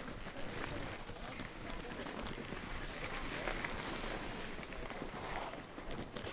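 Skis and ski boots scraping and crunching on snow as a skier moves slowly across the top of a piste, with faint voices of other skiers.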